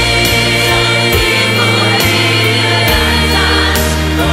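Music: a song with long held sung notes and layered backing voices over instrumental accompaniment.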